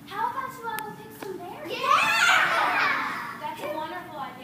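Young girls' voices on stage: one voice speaks, then many children's voices rise together in a loud clamour about two seconds in, dying away after about a second and a half, with a few short knocks early on.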